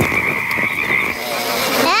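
Night-time chorus of frogs croaking over a steady high-pitched trill.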